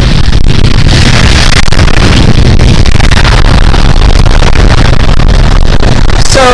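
Wind buffeting the camera's microphone: a loud, steady rumble that swamps everything else.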